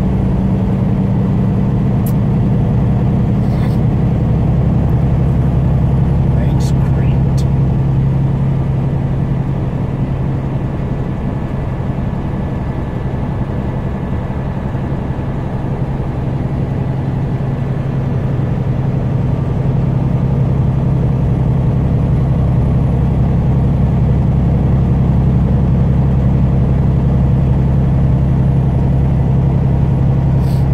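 Truck engine droning steadily at highway speed, heard from inside the cab with tyre and road noise; the drone drops slightly in pitch a few seconds in.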